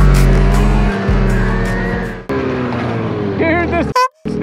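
Background music over a Ski-Doo 600 snowmobile engine revving. About halfway through the engine sound drops away and the music carries on.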